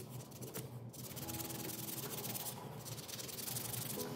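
Sandpaper rubbed by hand over a carved wooden spoon, a dry scratching in repeated strokes.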